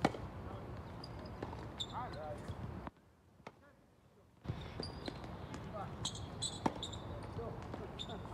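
A tennis ball struck back and forth by rackets in a doubles rally, with several sharp hits and bounces on a hard court, the loudest hit at the very start.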